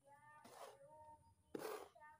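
A small hand tool scraping and pushing through loose, dry potting soil on a wooden board, in short strokes about a second apart. A faint, drawn-out pitched call sounds underneath in the first second.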